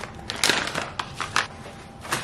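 Plastic pouch of chia seeds crinkling as it is handled, in short crackling bursts about half a second in and again just after a second.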